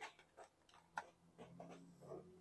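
Near silence with a few faint clicks and ticks from hands handling a guava stem and grafting tools; the sharpest click comes about a second in.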